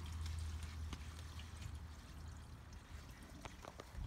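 Gray water draining from an RV holding tank through a sewer hose into a ground drain, a low rushing flow that gets gradually quieter.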